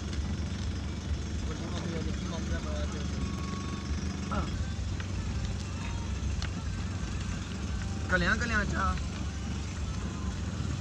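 Steady low rumble of a car driving slowly, heard from inside the cabin, with brief voices about eight seconds in.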